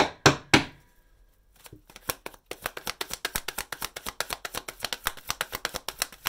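A deck of tarot cards shuffled by hand: three sharp taps near the start, then a fast run of card clicks from about halfway through.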